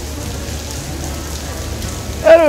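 Steady rain falling on wet paving, an even hiss with a low rumble underneath.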